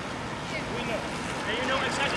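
Indistinct voices of people talking, not close to the microphone, over a steady hiss of street and traffic noise.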